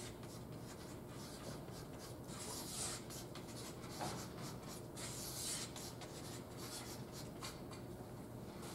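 Chalk writing on a blackboard: faint scratching strokes in a few short spells, with light taps of the chalk against the board.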